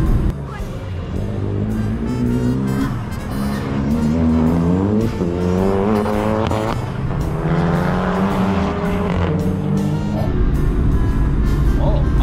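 Race car engine accelerating hard, its note climbing in pitch in several pulls broken by gear changes, over background music.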